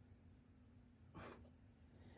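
Near silence: room tone with a faint steady high-pitched whine and a low hum, and one brief soft sound a little over a second in.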